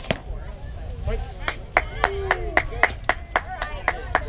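A single sharp smack at the start, like a pitched softball hitting the catcher's mitt. From about a second and a half in, players clap in an even rhythm, about four claps a second, while voices chant along: a team cheer.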